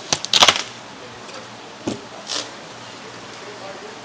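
Styrofoam fish-shipping box being opened: a burst of scraping and squeaking of foam against foam as the lid is worked loose about half a second in, then a couple of short scrapes around two seconds in.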